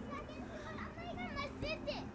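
Children's voices calling and chattering, several high-pitched cries through the second half.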